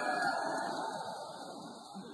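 Crowd noise from spectators in an indoor boxing arena, a steady din of many voices that slowly dies down.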